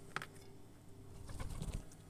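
Faint rustling from a cat rolling close to the microphone, with one sharp click just after the start and a brief low rumble about one and a half seconds in.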